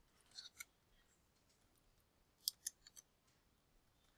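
Faint computer keyboard keystrokes: a few quick, sharp clicks about half a second in, and another short cluster about two and a half seconds in.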